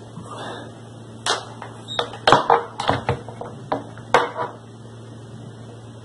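A laptop power brick and its coiled cables set down and settled on a glass-topped bathroom scale: a string of sharp knocks and clatters between about one and four and a half seconds in, over a steady low hum.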